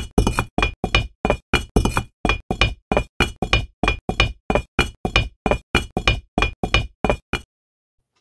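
Bricks clacking down one after another onto a brick wall, a rapid even run of sharp clinks, about four a second, that stops abruptly near the end.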